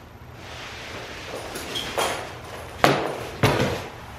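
A horse blanket being handled and pulled off a pony, the fabric rustling, with three sharp knocks about two, three and three and a half seconds in, the last two the loudest.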